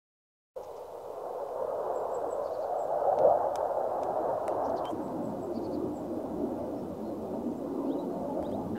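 Fighter jet passing overhead out of sight: a steady distant rumbling rush that swells to its loudest about three seconds in, then holds.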